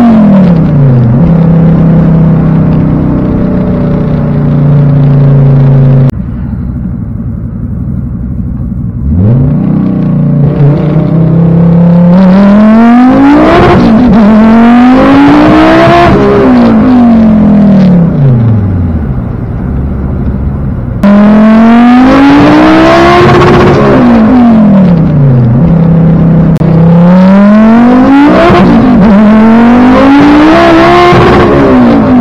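Volvo 850 T-5R's turbocharged five-cylinder engine heard from inside the cabin, pulling hard through the gears: the engine note climbs steeply, then drops suddenly at each upshift, over several runs. Two abrupt cuts break it, with a quieter stretch after the first.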